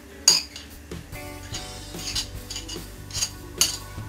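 A metal spoon clinking and scraping against ceramic plates as grated cheese is spooned off a saucer, in a few short sharp clicks, the loudest about a quarter second in.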